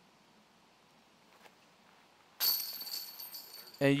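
A disc golf putt hits the chains of a metal basket about two and a half seconds in: a sudden jingling clatter of chains that rings on and fades over about a second and a half. The putt is made.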